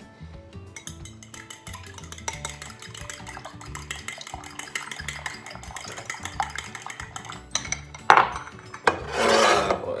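A utensil beating raw eggs in a ceramic bowl: quick, irregular clicking and tapping against the bowl. A single louder knock comes near the end.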